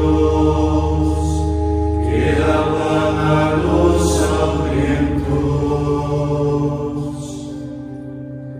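Men's voices chanting a psalm in unison, held on a steady reciting tone with small changes of pitch, getting quieter near the end.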